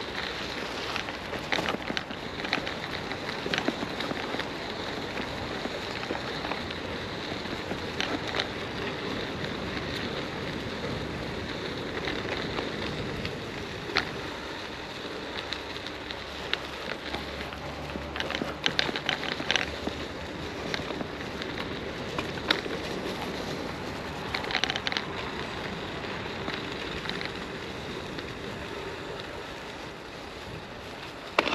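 Rain falling: a steady hiss with scattered sharp ticks of drops, some coming in quick clusters.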